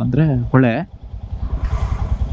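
Motorcycle engine idling with an even low putter, a man's voice talking over it during the first second.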